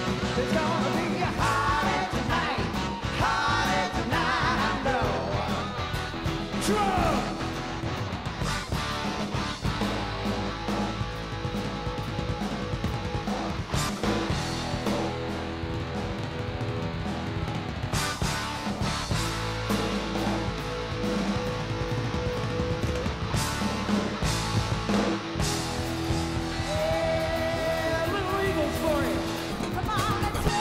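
A live rock band playing: electric guitar and drum kit, with singing at times.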